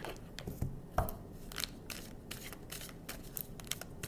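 A deck of oracle cards being shuffled by hand: a run of irregular light card slaps and clicks, with one sharper knock about a second in.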